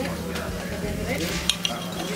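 Fork and knife cutting a grilled shrimp on a plate, metal scraping and clicking on the plate, with two sharp clicks about one and a half seconds in. Under it, a steady dining-room hum and background noise.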